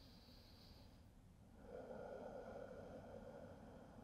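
Near silence, with one faint, long exhale from a person holding a seated forward fold, starting about a second and a half in and lasting about two seconds.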